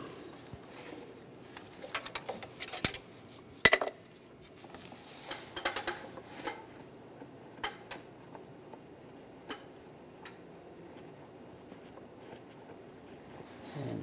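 Metal clinks and knocks of an oil filter wrench working a spin-on oil filter loose, clustered about two to four seconds in, then a few scattered clicks.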